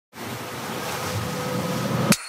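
Ocean surf: a steady rushing wash of waves that swells slightly.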